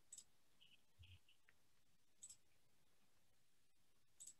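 Near silence with a few faint clicks of a computer mouse as a file is being opened: a pair near the start and another pair about two seconds in.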